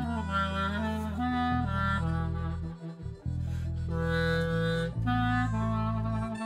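Saxophone playing a slow melody line over steady, held low accompaniment, with a brief pause between phrases about halfway through.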